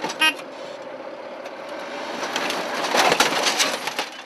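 A Stryker Engineer Squad Vehicle's diesel engine runs as its mine plow pushes a wrecked car, with metal scraping and crunching that grows louder in the second half and is full of sharp cracks. A brief high tone sounds just after the start.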